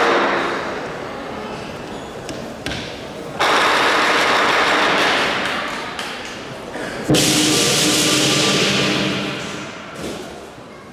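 Lion-dance percussion: drum beats with gong and cymbal crashes. Two big crashes, about three and a half and seven seconds in, each ring out and fade over a couple of seconds.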